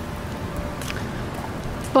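Steady outdoor background hiss with a few faint taps.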